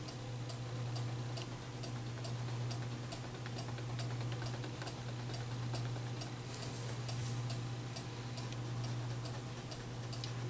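Crayon strokes on paper, making quick regular ticks a few times a second, over a steady low hum.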